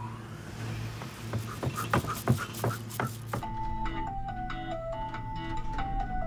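Cartoon lift running with a steady low hum and scattered clicks and knocks. About halfway through, the lift's background music starts: a plain, simple melody of held single notes.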